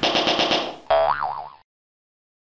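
Cartoon sound effects for an animated logo. First comes a quick fluttering rattle of about ten pulses a second, then a springy 'boing' whose pitch wobbles up and down, cut off about a second and a half in.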